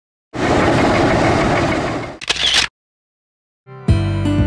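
A machine engine running loudly for about two seconds, then a shorter burst with a squeal that cuts off abruptly. After a second of silence, acoustic guitar music starts just before the end.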